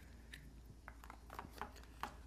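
Faint handling sounds: a few soft, scattered clicks of a plastic sushi-roller tube being latched shut and handled.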